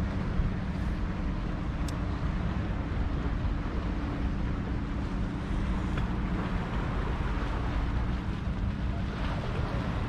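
Wind buffeting the microphone over a steady low motor hum, with a few faint ticks about one and two seconds in and again around six seconds.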